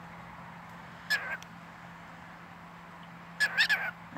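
Cockatiel chirping: one brief chirp about a second in, then a quick run of short chirps near the end.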